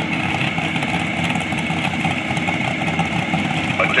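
Vehicle engines running steadily at idle, a dense even mechanical noise without revving.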